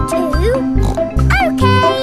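Children's cartoon soundtrack: upbeat music over a steady, bouncy bass line, with short voice-like sounds rising and falling in pitch, the clearest about one and a half seconds in.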